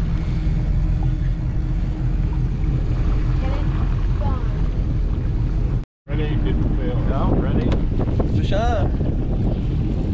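Fishing boat's engine running steadily, a low drone with wind on the microphone. The sound cuts out completely for a moment about six seconds in, then the engine drone resumes with indistinct voices over it.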